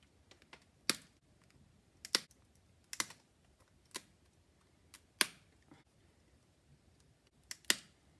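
A series of sharp, short clicks at irregular intervals, about seven of them, from a small hand tool being worked by hand at a workbench.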